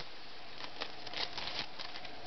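Light, irregular crinkling and clicking of hands handling paper craft cards and clear plastic wrap.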